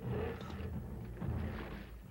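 Low rumble of a sci-fi film's explosion sound effect, slowly dying away.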